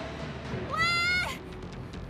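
A young woman shouting once, a short high call that rises and then falls away about halfway through, over background music.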